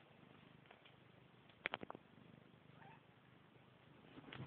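Young Bengal kittens purring faintly and steadily as they are stroked, with a quick run of about four clicks a little under two seconds in.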